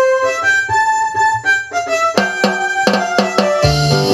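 Live electronic keyboard music: a single-note melody of held notes, joined about two seconds in by sharp drum hits and near the end by a pulsing bass line.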